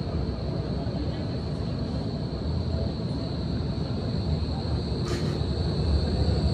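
Street traffic at a tram stop: a steady low rumble of traffic and trams, with a thin steady high-pitched whine over it and a short hiss about five seconds in.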